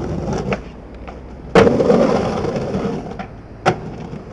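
Skateboard wheels rolling on concrete with a couple of sharp clicks, then a loud hit of the board about a second and a half in, followed by about a second of loud board noise. Another sharp click comes near the end.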